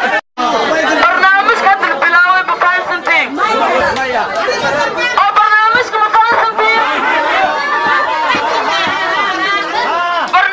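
Speech: a woman talking through a handheld megaphone, with other voices chattering around her. The sound drops out for a moment just after the start.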